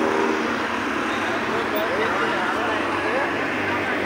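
Steady road traffic noise, with faint voices in the distance.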